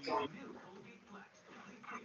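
A dog yelps sharply right at the start and again briefly near the end, over low background talk.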